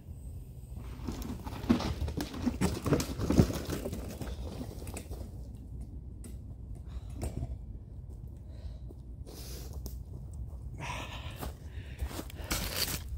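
A mountain bike and its rider crashing onto a dirt trail: a run of knocks and clatters over about three seconds, loudest about two seconds in and again about three and a half seconds in. Near the end come footsteps and rustling in dirt and dry leaves.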